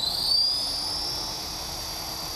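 Xheli EXI 450 electric RC helicopter running on the ground: a high motor-and-rotor whine that rises in pitch over about the first second, then holds steady.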